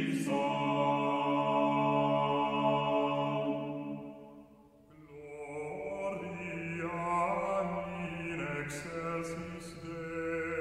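Male vocal ensemble singing a 14th-century polyphonic Mass setting in long held chords. The phrase dies away about four seconds in, and after a short breath the voices enter again with a new phrase, with sung consonants audible near the end.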